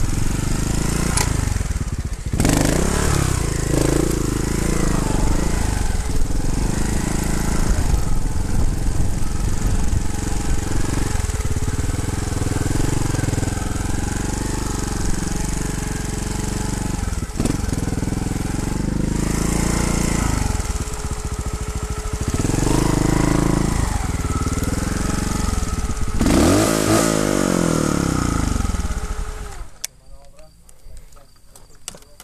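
Trials motorcycle engine revving up and down as it is ridden, over a haze of noise like wind on a helmet microphone. The engine sound drops away suddenly at the very end.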